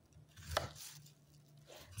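A knife slicing through apple, with one crisp cutting stroke about half a second in, then fainter cutting noise.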